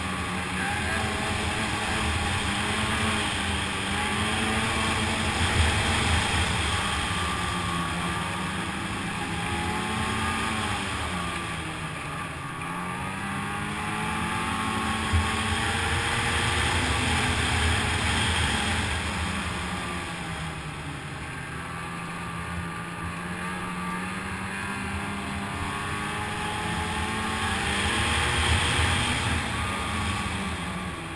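Snowmobile engine running steadily under way, its pitch rising and falling with the throttle.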